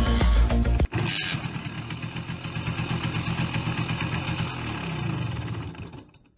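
Background music mixed with a single-cylinder two-stroke Simson motorcycle engine running as the bike rides along, in a quick, even rhythm; both fade out at the end.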